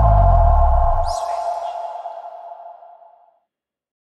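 Electronic logo sting: a sudden synthesized hit with a deep bass boom and a ringing tone that fades out over about three seconds, with a brief high swish about a second in.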